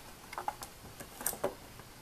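A handful of light, scattered clicks of wooden mala beads knocking together as the strung necklace is handled and the beading wire is pulled through the crimps.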